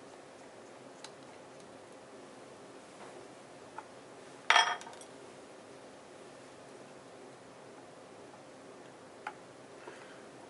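Faint clicks of a screwdriver on the front of a Sigma 500mm f/4.5 lens during disassembly, and about halfway through one sharp, ringing clink as a metal ring holding glass is set down on the wooden bench.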